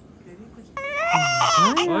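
A newborn baby starts crying suddenly about three quarters of a second in, a loud, high-pitched wail that wavers in pitch. An adult's voice talks over it.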